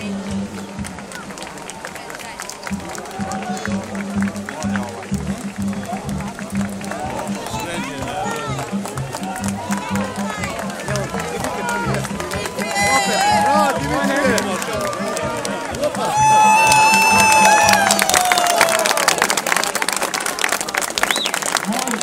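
A crowd of spectators shouts and cheers on a swimming race, with music playing under the voices. About sixteen seconds in, a long high call rises above the crowd and falls in pitch at its end, and clapping follows near the end.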